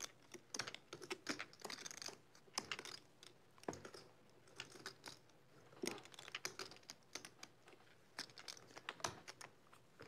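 Poker chips clicking faintly and irregularly in players' fingers, a few scattered clicks at a time.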